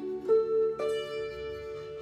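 Slide guitar in open D tuning, with the slide bar held across the 12th fret: strings picked one after another, the loudest note about a third of a second in and another just under a second in, building a D major chord that rings on.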